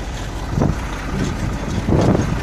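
Heavy truck engine idling as a steady low rumble, with wind buffeting the microphone.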